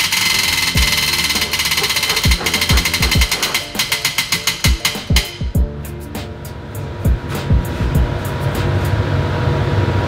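Prize wheel spinning, its pointer flapper clicking rapidly over the pegs. The clicks slow and space out until the wheel stops about six seconds in. Background music with a beat plays throughout.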